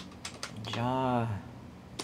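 A few keystrokes on a computer keyboard, most in the first half second and one more near the end. In the middle a voice holds a drawn-out hum for just under a second.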